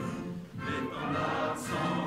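A national anthem played as a recording: a choir singing with musical accompaniment. The music dips briefly about half a second in.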